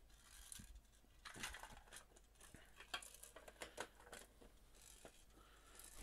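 Faint scattered clicks and light plastic rattles as plastic parts trays holding a few loose Lego pieces are handled and moved aside. The clicks come in small clusters, about a second and a half in and again around three seconds in.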